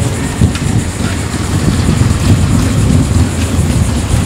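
Wind buffeting the camera microphone: a loud, uneven low rumble that rises and falls without any steady pitch.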